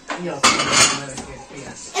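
Dishes and cutlery clattering as plates are handled on a laden table, loudest for about half a second near the middle, with voices around it.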